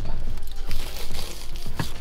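Paper food wrapper crinkling and rustling in the hands, with a single sharp click near the end.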